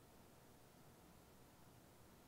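Near silence: faint, steady room tone with no distinct sounds.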